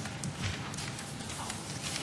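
Quiet room noise in a council chamber, with a few faint, irregular clicks and knocks.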